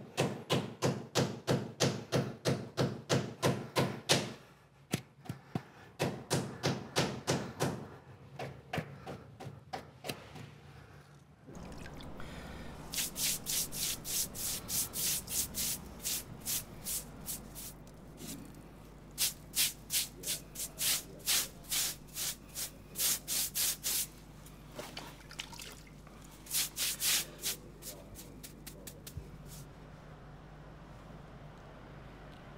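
A rubber mallet tapping a stone step down into its mortar bed, in quick even blows about three or four a second, for the first several seconds. Then a stiff hand brush scrubs over the stone step in quick rasping strokes, coming in bursts.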